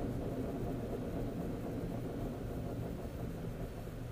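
Steady low rumble of a car's engine and tyres heard inside the cabin while driving, easing slightly near the end.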